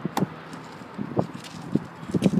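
A few light clicks and knocks as a car's driver door is opened by hand: handle and latch.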